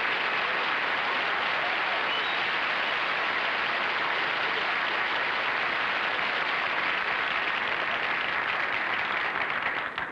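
Studio audience applauding steadily for several seconds, dying away near the end.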